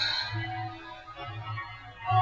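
Faint leftover backing music, a soft keyboard-like tone over low bass pulses, bleeding through a vocal track extracted from a dance song with the Voicetrap plugin, between sung lines. At the start the reverb tail of the last sung note fades out.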